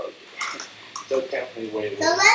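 Indistinct talking, short broken phrases with no clear words.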